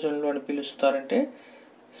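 A man speaking during the first second or so, with a steady high-pitched tone running unbroken underneath.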